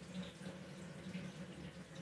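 Faint, steady sound of water running in a shower during a leak test of the tray's joints.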